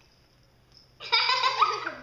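A person laughing in a high-pitched giggle, starting about a second in, after a near-silent first second.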